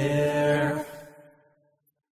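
Unaccompanied singing voice holding the last low note of a line, fading out about a second in, then silence.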